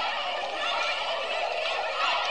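A group of women's voices squealing and chattering excitedly all at once, in a dense overlapping clamour.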